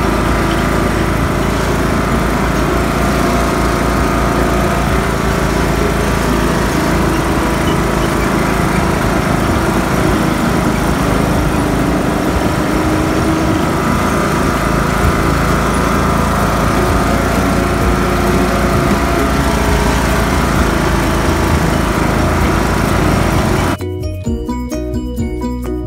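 An old, beat-up tractor's engine running steadily, then cutting off just before the end.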